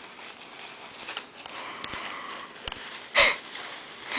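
Tissue paper rustling and crinkling softly as hands pull it out of a cardboard gift box, with a few faint clicks and a short, louder burst of noise about three seconds in.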